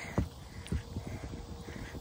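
Low rumble of wind on a phone microphone, with a few light, irregular thuds of footsteps on turf as the person recording walks.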